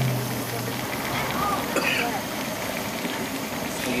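Chicken cooking in a large wok over a gas flame, a steady sizzling hiss, while liquid is poured from a bottle into a paper cup.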